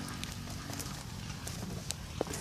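Outdoor background noise: a steady low rumble with several light, sharp clicks scattered through it.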